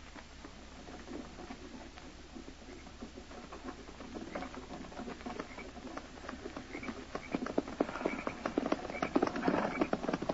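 Hoofbeats of a group of horses approaching, a radio-drama sound effect. They start faint and grow steadily louder and denser through the second half.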